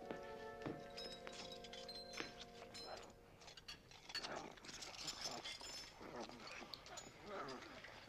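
Quiet, eerie film score with held chords that fade out about three seconds in, over scattered clinks of dishes. After that come the gurgling, gobbling creature noises of Slimer, the green ghost, feeding at a room-service cart.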